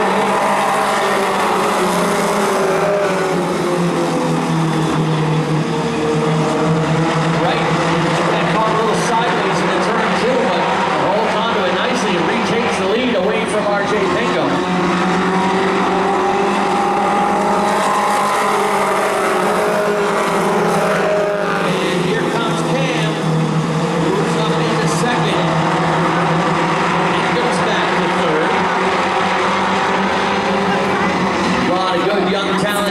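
A field of four-cylinder pro-stock stock cars racing around a short oval track. Several engines sound at once, their pitch rising and falling over and over as cars accelerate, lift for the turns and pass by.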